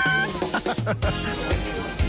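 A short, high-pitched vocal squeal whose pitch rises and falls. About a second in, background music with a low, pulsing beat comes in.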